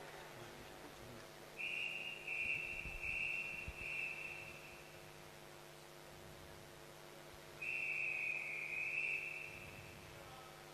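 A swimming referee's whistle: four short blasts in quick succession, then after a pause one long blast. These signal the swimmers to get ready and then to step up onto the starting blocks.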